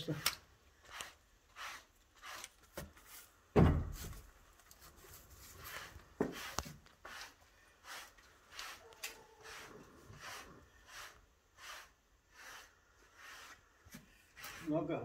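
A wooden stick scraping back and forth over a cow's hide as her neck is scratched, in short rasping strokes about two a second. One heavy thump about three and a half seconds in is the loudest sound.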